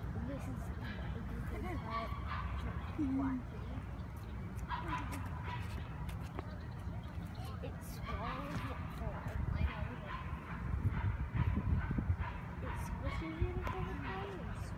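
Wind rumbling and buffeting on the microphone, with people's voices in the background.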